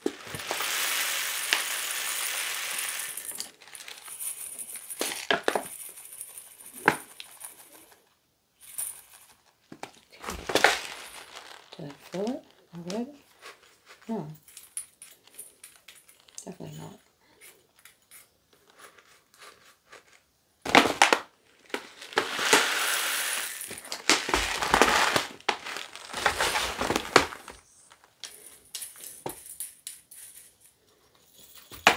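A plastic bag of poly pellets crinkling as it is handled, with the plastic pellets rattling and pouring. There are long stretches of it at the start and again past the middle, and short rustles between.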